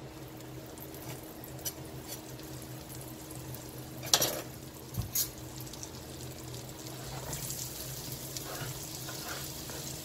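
Butter sizzling and bubbling as it melts in hot bacon grease in a frying pan, the sizzle growing louder from about seven seconds in. A couple of sharp clicks come about four and five seconds in, over a low steady hum.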